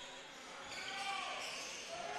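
Live basketball on an indoor court: a ball bouncing on the hardwood, with faint players' calls and crowd murmur in the hall.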